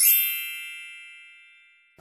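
A single bright bell-like chime, an edited-in transition sound effect, struck once and ringing out, fading away evenly over about two seconds.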